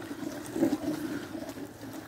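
Wooden paddle stirring thick mole paste in a clay cazuela: an irregular, wet churning and scraping against the pot.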